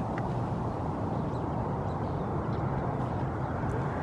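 Steady low outdoor background rumble, even throughout, with a faint click or two and no distinct bird calls.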